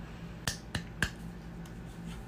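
Three short, sharp clicks about half a second in, each a quarter second or so after the last, over a faint steady hum.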